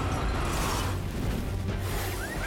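Movie-trailer music mixed with a dense rush of sound effects over a deep, steady low rumble.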